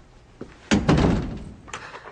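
A door being shut: a light click, then one loud thud that dies away over most of a second, then another faint click.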